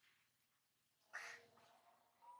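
A single short, harsh call from a macaque, faint, about a second in.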